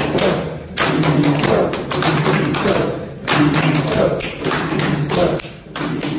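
A group of people clapping their hands together again and again while voices chant along, broken by three short pauses.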